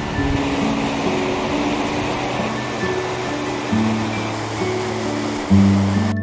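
Background music with slow, held notes over the steady rush of a fast-flowing mountain river in white water.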